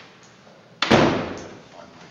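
A door banging shut once, a sudden loud bang about a second in that dies away quickly in the room's echo.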